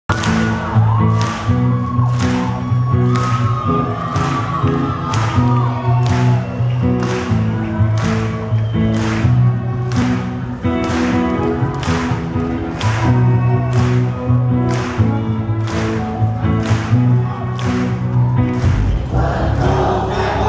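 A live band playing a song with a steady drum beat of about two beats a second, sustained bass notes and a male lead singer. Near the end the beat breaks off and a noisier wash takes over.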